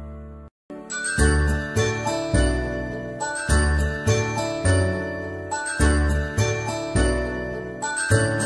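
Background music: a light, tinkling instrumental tune with bell-like notes over bass notes on a steady beat. It cuts out briefly about half a second in and then starts again.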